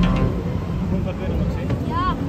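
Background music cutting off just after the start, then distant people's voices over a steady low outdoor rumble.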